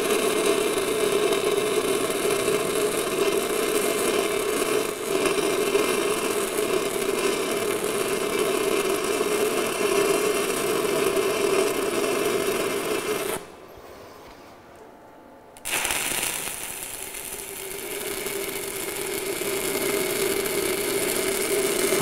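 Stick-welding arc of an E6010 electrode running a root pass on steel pipe: a steady dense crackle. It cuts out for about two seconds past the middle, then starts again and builds back up.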